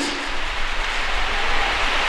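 Steady hissing background noise with a low hum underneath, in a pause between spoken phrases.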